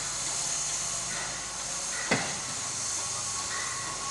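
Steam locomotive hissing steadily as steam escapes while it stands on a turning turntable. A single sharp knock comes about two seconds in.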